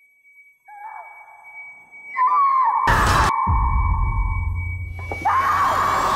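A woman screaming in anguish: a faint cry about a second in, then long high wails, loud from about two seconds in and again near the end. Under it is dramatic trailer music, with a deep boom about three seconds in, a low rumble after it and a thin steady high tone.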